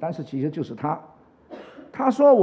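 A man speaking Mandarin into a lectern microphone for about a second, then a short pause.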